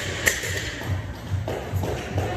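A loaded barbell with bumper plates bouncing on a rubber gym floor after being dropped: a knock with a metallic ring just after the start, then two softer knocks about a second and a half in. Background music with a steady beat runs underneath.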